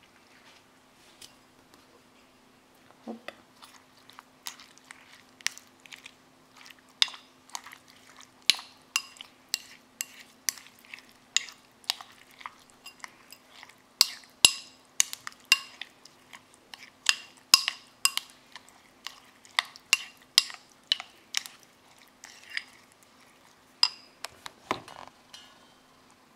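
Green plastic spoon stirring yogurt into cooked barley flakes in a porcelain bowl, knocking against the bowl's side in a long run of light clinks, about one or two a second.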